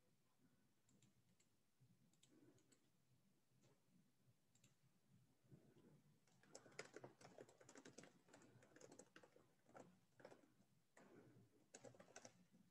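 Faint typing on a computer keyboard: a few scattered keystrokes at first, then a quick run of keystrokes from about halfway through.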